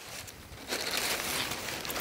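Packaging crinkling as it is handled and unwrapped, a soft rustle that gets louder a little way in.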